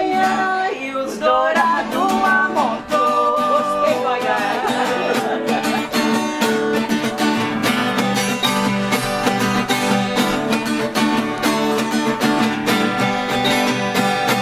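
Two acoustic guitars playing together, strummed and picked in a steady rhythm, in an instrumental break of a Brazilian sertaneja moda de viola. A voice sings briefly in the first few seconds.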